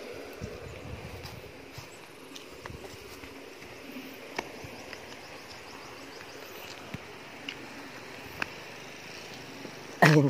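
Faint outdoor ambience by a canal: a steady low hiss, with a few scattered light clicks and taps in the second half.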